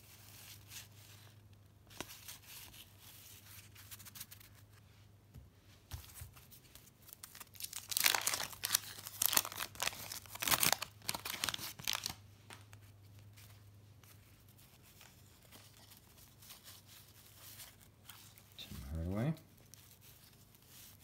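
The waxed-paper wrapper of a 1990 Fleer basketball card pack is torn open by hand, a run of crackling tearing and crinkling about eight to twelve seconds in. Before and after it there is only the quiet handling of cards.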